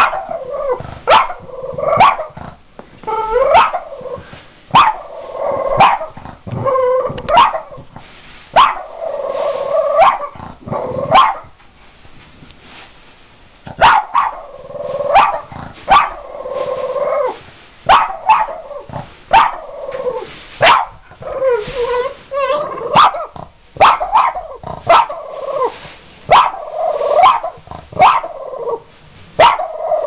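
A Boston terrier barking over and over, short barks mixed with longer drawn-out ones, with a break of about two seconds near the middle. It is alarm barking at an upright vacuum cleaner that is standing switched off.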